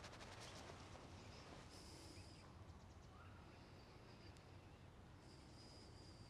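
Near silence with faint bird calls: a few short high chirps about two seconds in, around four seconds and again near the end, over a faint steady low background.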